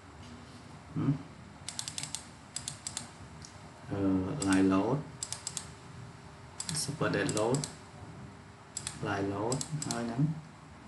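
Computer keyboard and mouse clicking in short bursts of a few quick clicks each, several times over.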